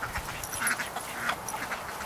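A flock of backyard chickens and ducks making short, scattered calls.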